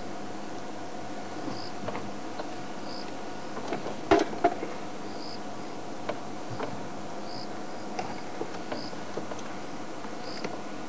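Evening insect chirps in the bush: short, high chirps every second or two over a steady hiss. A few sharp clicks fall among them, the two loudest about four seconds in.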